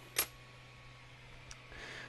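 Quiet room tone with a steady low hum, broken by one short, sharp click about a quarter second in and a faint tick about a second and a half in.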